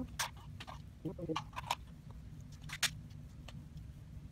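Irregular light clicks and taps of hands handling a small plastic camera accessory and its packaging, over a low steady hum.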